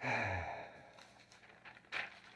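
A man's audible sigh: a breathy exhale with a low, falling voiced tone that starts suddenly and fades over about a second. Near the end comes a brief crackle of paper being handled.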